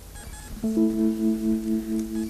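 Music: sustained instrumental notes, one entering about half a second in and a second note joining just after, held steadily together with a slight pulsing.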